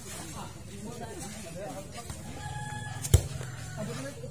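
A rooster crowing once, a held call of about half a second, followed right after by a single sharp slap of a hand striking a volleyball, the loudest sound here. Low voices of players and onlookers run underneath.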